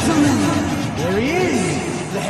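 A man's voice at a microphone, drawn out and swooping up and down in pitch, with music underneath.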